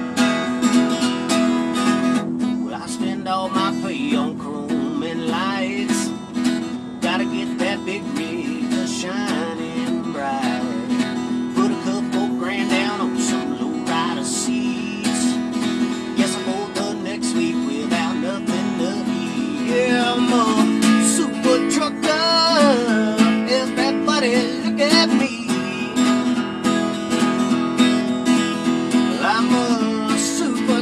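Acoustic guitar strummed in a steady rhythm, playing a song, with the melody growing stronger about two-thirds of the way through.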